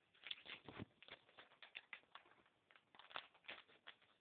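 Faint, irregular crinkling and clicking of a Mega Bloks blind-pack plastic bag being opened and handled.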